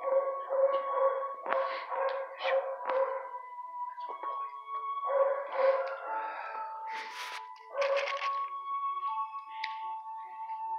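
Dogs barking and howling in a shelter kennel block: short barks repeating about twice a second, then long held howls, with a few sharp louder barks.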